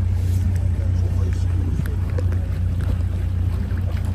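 Small boat's motor running at a steady low hum while the boat moves through the water, with water washing along the hull.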